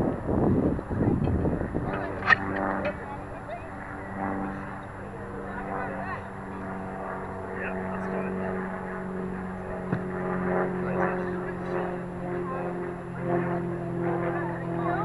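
A steady, even engine-like drone runs on under faint distant voices. In the first two seconds there is close rustling and handling noise, ending in a sharp knock.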